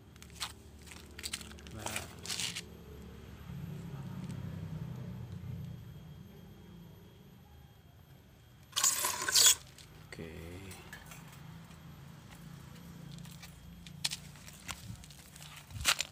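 Bonsai training wire being handled and wrapped around a ficus branch: scattered small clicks, jingles and crinkles of wire and leaves, with a louder rustling burst about nine seconds in.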